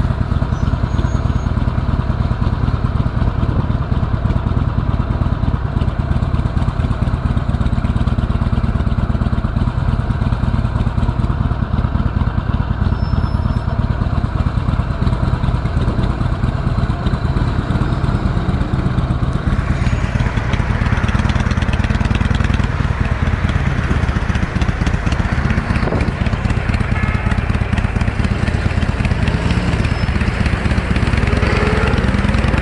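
Motorcycle engine running steadily at low revs. From about twenty seconds in, a rushing wind and road noise joins it as the bike gets moving in traffic.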